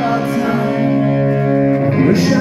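Live rock band playing through amplifiers: electric bass and electric guitar hold a sustained chord, which changes to a new one near the end.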